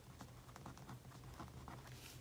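Faint scratching and small irregular ticks of a fine-tip pen writing on planner paper, over a low steady hum.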